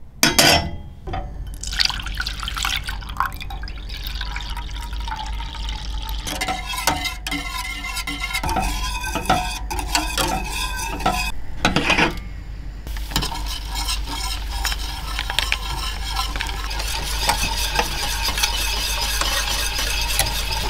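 Wire whisk stirring and scraping against a stainless steel saucepan, beating liquid and instant mashed potato mix as it thickens into mash. A clank of the pan being set on the gas stove grate comes just after the start.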